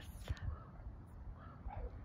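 Wind rumbling on the microphone, with a few faint short animal calls.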